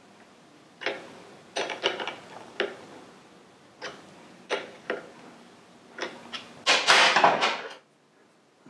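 Metal spanner clicking and knocking on the nut and steel bridge of a homemade clutch spring compressor as the nut is wound in a bit at a time, pressing the clutch diaphragm spring down to take the load off its retaining clip. Near the end comes a louder scraping rattle lasting about a second.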